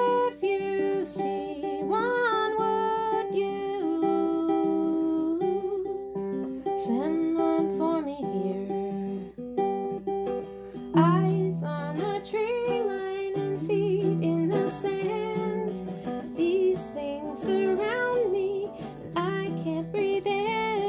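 Acoustic guitar being fingerpicked, with a voice singing over it at times.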